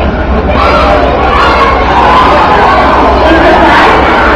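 A large group of young children shouting and cheering together, many voices at once, loud, swelling up about half a second in and holding.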